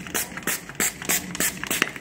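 Fine-mist finger-pump spray bottle squirting water and detergent onto car window glass. The pump is pressed again and again in quick short hissing squirts, about three a second.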